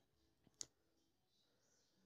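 Near silence: room tone, with a single faint click just over half a second in.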